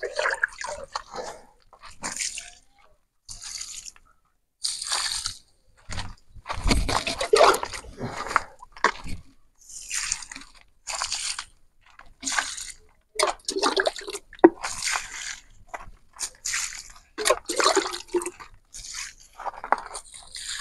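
Diluted rabbit urine poured from a small tin can onto carrot plants and soil in short, irregular splashes, roughly one a second.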